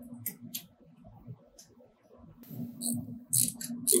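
Light metallic clicks and scrapes as bolts are fitted into the spindle's air cylinder by hand: a few isolated ticks, then a quicker run of clicks in the last second or so. A steady low hum runs beneath.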